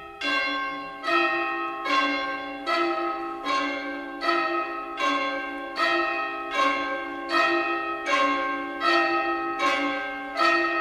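Orchestral bells struck in a slow, even pulse, a little more than one stroke a second, each stroke ringing on into the next over a steady held tone. This is the opening of the first movement of a symphony.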